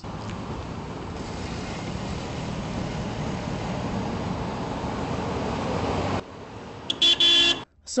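Road traffic on a campus road: steady tyre and engine noise of passing cars that slowly grows louder, cut off suddenly about six seconds in. Near the end a car horn gives one short toot.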